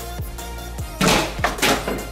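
Background electronic music with a steady beat. About a second in, two quick thunks as a mini plastic water bottle strikes an exercise ball and lands upright on a wooden stair tread.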